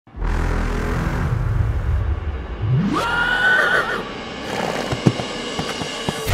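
A horse whinnies once, a high call about a second long, midway through, over background music. A few hoof thuds follow near the end.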